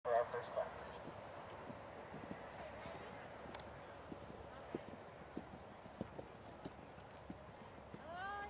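Horse's hooves striking sand arena footing at a canter: dull, irregular thuds about every half second to second. A brief burst of a voice comes at the very start.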